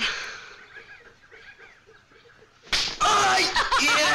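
A sharp hand slap about two and a half seconds in, as one player slaps at the other's hands in a hand-slapping game. A woman's loud laughter follows straight after.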